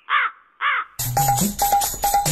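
A crow cawing twice, two short arched caws with silence between them. About a second in, a percussive music track with a quick repeating beat cuts in abruptly.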